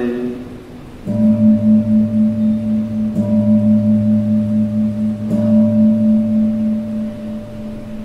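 A low-pitched gong struck three times, about two seconds apart, each stroke ringing on and slowly fading: rung at the elevation of the chalice after the consecration at Mass.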